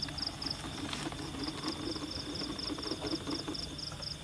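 Night insects chirping: an even pulse of high chirps about four times a second over a steady high-pitched hum.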